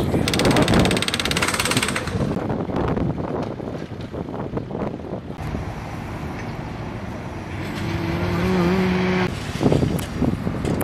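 Busy street and worksite noise: traffic and a crowd's background voices, with a fast mechanical rattle for about the first two seconds and a steady low tone, like an engine or horn, for about a second and a half near the end.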